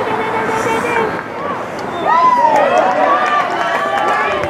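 Several voices at a lacrosse game shouting and calling out over one another during live play, growing louder about halfway through.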